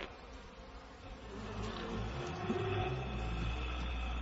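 Bees buzzing in a steady drone, quieter at first and growing louder after about a second and a half.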